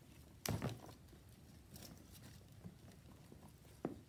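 Handling of a leather handbag with metal chain straps: a double knock about half a second in and a sharp click near the end, with faint rustling and small clicks between.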